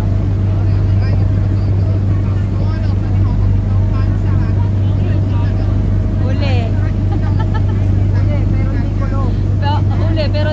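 A passenger ferry's engine droning steadily and loudly, a deep even hum that does not change, with passengers' voices talking faintly over it.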